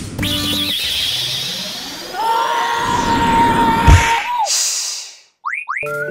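Cartoon-style comedy sound effects laid over background music: a wavering, slowly rising whistle, then a held boing-like tone with a loud thump about four seconds in. A brief hiss and a short gap follow, and two quick falling chirps lead into music near the end.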